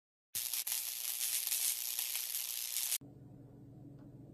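Hissing, crackling static-like intro sound effect, starting after a brief silence and cutting off suddenly about three seconds in, leaving a faint low hum of room tone.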